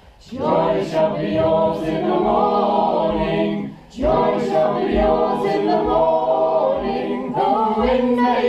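A choir of mixed voices singing a Christmas carol in parts, with held notes and a short breath between phrases about four seconds in.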